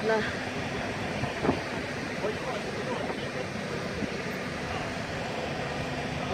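Steady wind noise on a phone microphone over outdoor background noise, with a faint low hum and a brief knock about one and a half seconds in.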